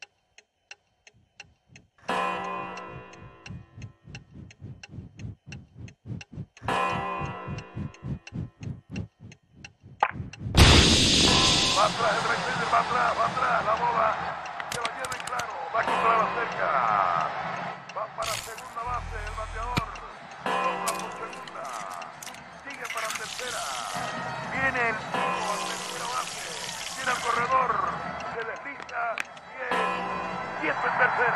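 A film soundtrack. A regular mechanical ticking with a low tone starts about two seconds in. About ten seconds in a sudden loud swell gives way to music mixed with the voices of a cheering stadium crowd.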